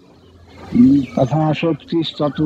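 A man speaking, starting a little under a second in after a brief quiet moment.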